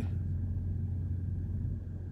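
Steady low rumble of an idling diesel semi-truck, heard from inside the cab.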